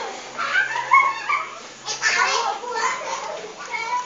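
Indistinct, high-pitched voices in short broken bursts, with rising and falling pitch.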